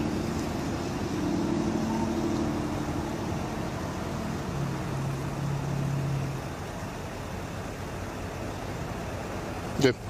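Steady low hum of an idling car engine, its tones shifting slightly in pitch over the seconds.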